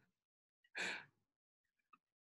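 Near silence broken about a second in by one short breathy exhale, like a sigh, from a person on the call; a faint click or two near the end.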